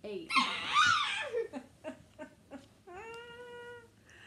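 A loud, high-pitched vocal squeal with laughter in the first second and a half, then a few short bursts of voice, then one long held vocal note near the end.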